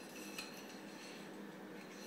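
Faint metal-on-metal sliding as the outer sleeve of a surgical diathermy handpiece is pushed back over its metal shaft, with a light click about half a second in.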